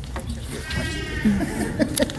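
A person laughing briefly, a short wavering laugh about half a second long past the middle, with faint murmurs of voices around it.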